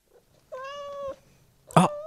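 A steady-pitched, cat-like meow lasting just over half a second. A second meow begins near the end.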